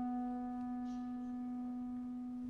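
Clarinet holding a single long, soft low note that fades slowly, a held closing note of the piece.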